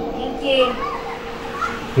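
Background chatter of a crowd with children's voices, over a faint steady hum.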